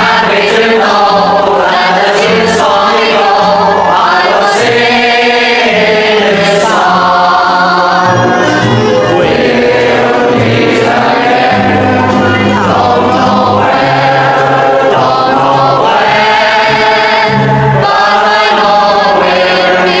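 Music: a choir singing sustained, legato phrases over steady low bass notes.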